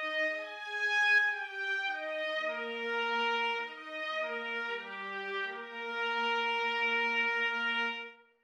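Sampled orchestral blend from the Spitfire Studio Brass and Studio Strings libraries, played from a keyboard: a piccolo trumpet doubling the violins, with the violas an octave below. Together they play a slow legato melody of sustained notes.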